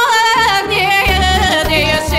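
A woman singing a Bulgarian folk song with a band. Her ornamented, wavering melody line falls in pitch over a steady bass beat.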